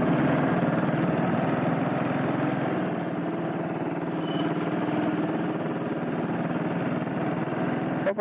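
Honda CB400SS's single-cylinder engine running steadily at low speed in slow traffic.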